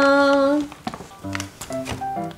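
A woman's drawn-out, sung 'pa pa' goodbye, held on one pitch and ending about half a second in. Then background music begins, a melody of short separate notes.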